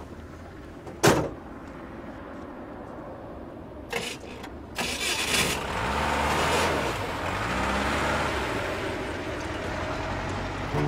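An old truck's cab door slams shut about a second in. A few seconds later the engine is cranked and catches, then runs and revs up as the truck pulls away.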